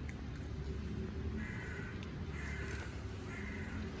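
A bird calling three times, about a second apart, each call short and harsh, over a steady low rumble.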